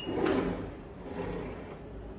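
A sliding window pushed open along its track: a loud rolling scrape right at the start that trails off over about a second.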